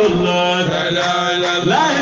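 A voice chanting a religious poem (kassida) in long held notes, with a rising slide in pitch near the end.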